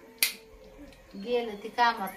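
A single sharp clink of stainless steel utensils knocking together during dishwashing, about a quarter second in, with a short ring after it. A voice follows in the second half.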